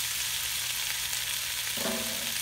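Onions and frozen bell peppers sautéing in olive oil in a pot, a steady sizzle, with a silicone spatula stirring through them.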